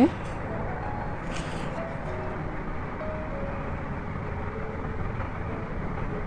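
Steady low background rumble and hiss with a few faint, brief tones, and a short soft rustle about one and a half seconds in.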